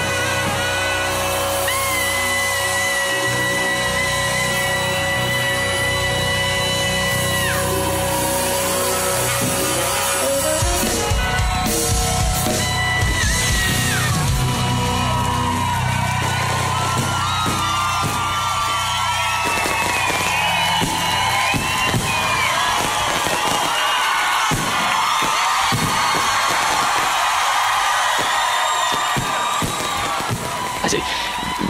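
A rock band playing live, with a long held note in the first few seconds; in the second half a crowd yells and whoops over the music.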